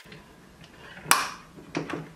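Bare wire ends clicking against the metal of a power strip outlet as they are pushed in by hand: one sharp click about a second in, then two fainter clicks.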